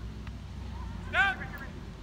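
One short, loud shout from a person about a second in, over faint outdoor background noise.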